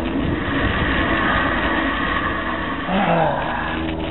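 Steady road noise from a bicycle riding on asphalt, with a humming tone, and a short sound falling in pitch about three seconds in.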